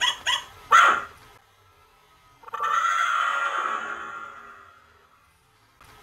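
Battery-powered toy dog barking: three quick barks in the first second. About two and a half seconds in, a longer noisy sound starts and fades away over about three seconds.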